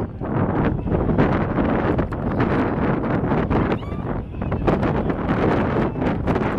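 Wind buffeting the microphone over two racehorses breaking from the starting gate and galloping on a dirt track, with a short shout about four seconds in.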